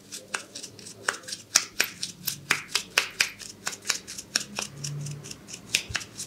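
Close-up of a brush dabbing and stirring white foamy cream in the ear's folds: a quick, uneven run of crisp wet clicks and crackles, several a second.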